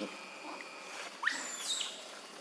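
A macaque's short high-pitched squeal, sweeping sharply up in pitch a little over a second in.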